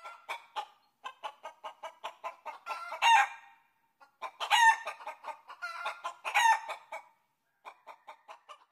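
A chicken clucking: quick runs of short clucks with a few louder, drawn-out squawks, about three, four and a half and six and a half seconds in, pausing a little after three seconds and again about a second before the end.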